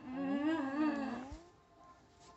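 A long, wavering, whining vocal cry, loudest in the first second and fading out about a second and a half in.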